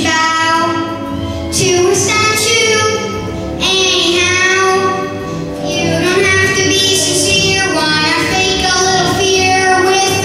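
A young boy singing a solo into a microphone with musical accompaniment, in sung phrases of about two seconds each.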